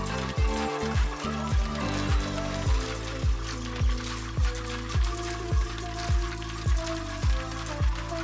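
Background music with a steady beat of about two bass-drum hits a second under sustained synth-like notes.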